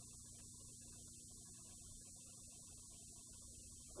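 Near silence on an old VHS tape: a steady low mains hum with a faint, steady high-pitched squeal from the tape.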